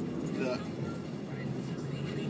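Steady engine and road noise inside the cabin of a moving Ford SportKa.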